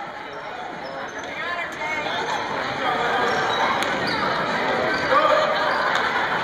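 A basketball dribbled on a gym floor amid the overlapping voices of spectators, the crowd noise growing louder about two seconds in.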